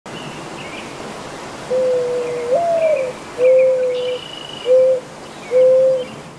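A bird's low, clear call: one long note that steps up in pitch and falls back, followed by three shorter notes. Fainter high chirps of smaller birds sound over a steady outdoor hiss.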